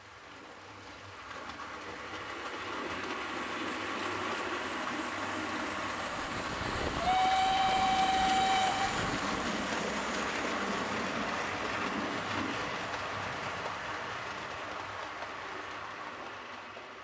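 OO gauge model steam train running past, its running noise building and then slowly fading, with a steam whistle sounding once for about two seconds near the middle.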